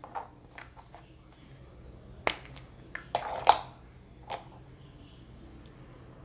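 A few sharp little clicks and taps of small objects being handled, loudest about three and a half seconds in: a paintbrush and a plastic blush compact being picked up and worked on a cutting mat.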